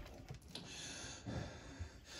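Quiet pause with low room tone and faint breathing close to a handheld microphone.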